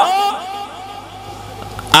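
A man's amplified preaching voice ends a loud phrase, and its echo through the sound system trails off over about a second. A pause follows with a faint steady hum, and his voice comes back in right at the end.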